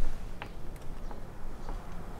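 A few faint, scattered clicks and light handling noises as jumper-cable leads and a clamp are worked in under a motorcycle seat, over a low steady hum.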